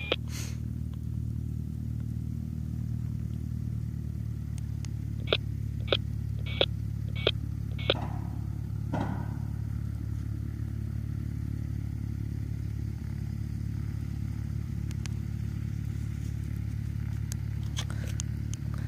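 An engine idling steadily with a low drone. A third of the way in come five short clicks, evenly spaced about two-thirds of a second apart.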